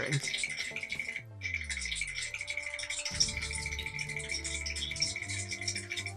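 A strange trembling, rattling noise played with a clip of a shivering dog: a falling sweep a little over a second in, then a steady held buzz of several tones. It sounds so unnatural that it may be a dubbed sound effect rather than the dog itself.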